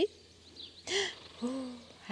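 A woman's short breathy gasp about a second in, followed by a brief low hum.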